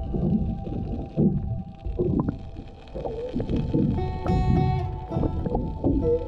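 Muffled underwater rumbling and sloshing from a camera held below the surface, coming in uneven surges. Music with held, shifting tones plays over it.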